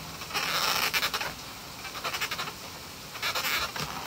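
A marker tip rubbing over the taut latex of a balloon as a face is drawn on it, in three short spells of scratchy strokes.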